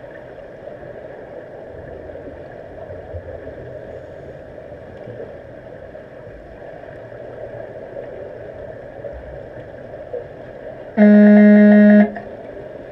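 Steady muffled underwater noise of a pool during an underwater rugby game. Near the end, a loud, low, flat electronic horn tone sounds suddenly for about a second: the underwater signal horn used to stop play.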